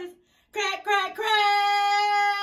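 A high-pitched voice singing: a brief pause, a couple of short phrases, then one long held note starting a little over a second in.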